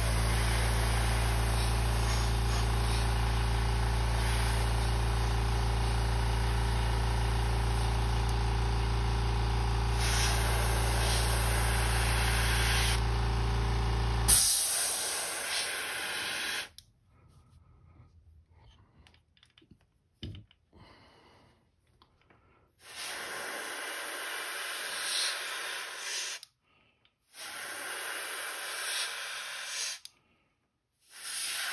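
Airbrush spraying paint with a steady hiss while an air compressor runs with a low, even hum. The compressor cuts off about halfway through. After a short quiet the airbrush hisses again in two bursts of a few seconds each.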